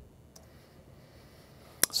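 Quiet room tone with a single faint click about a third of a second in, as a key is pressed to advance the presentation slide.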